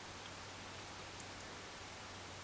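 Steady faint hiss of room tone with a low hum, and one brief sharp tick just over a second in.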